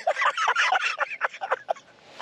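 Men yelping and laughing in a rapid run of short, high-pitched outbursts: the reaction to a dog shock collar going off on the man wearing it.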